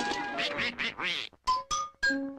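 Donald Duck's squawking, quacking cartoon voice jabbering for about a second, then two quick ringing dings a moment apart.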